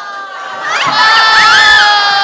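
Several young women's voices shrieking and squealing together in long held cries, swelling louder about half a second in, with pitches sliding up and down.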